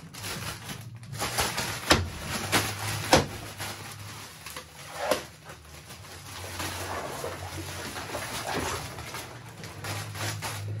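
A plastic bag of ice being handled: a few sharp knocks and rustles, with a steady low hum underneath.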